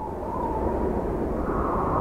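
A low, noisy whoosh sound effect swelling in and holding steady under an animated title, with no clear pitch.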